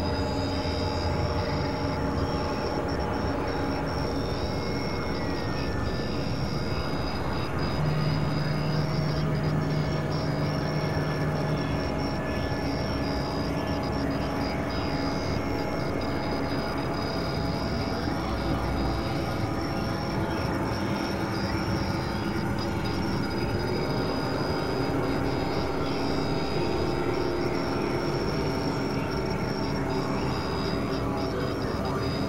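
Dense experimental noise-drone mix of several music tracks layered on top of each other: steady held tones over a constant noisy wash, with a low tone sounding for a few seconds about eight seconds in.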